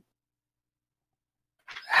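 Dead silence: a pause in the talk, with no background sound at all, until a voice starts speaking near the end.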